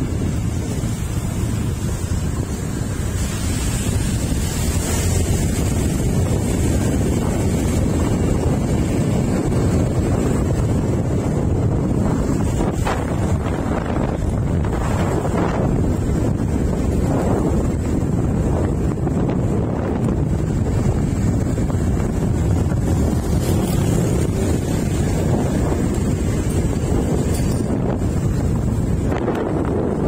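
Wind buffeting the microphone over the low, steady rumble of a vehicle travelling along a road, with a few brief louder rushes in the middle.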